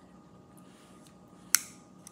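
Faint room tone, then about three-quarters of the way in a single sharp click as metal tweezers pick at the tip of a diamond-painting drill pen.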